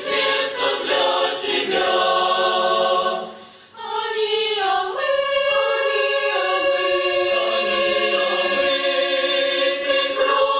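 Mixed church choir, men's and women's voices, singing a hymn in parts. The singing breaks off briefly about three and a half seconds in, then resumes with long held chords.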